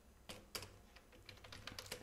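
Faint computer keyboard typing: a few scattered key clicks, then a quicker run of keystrokes near the end.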